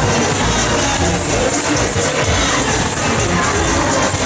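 Loud fairground ride music playing steadily, with crowd noise and riders cheering mixed in.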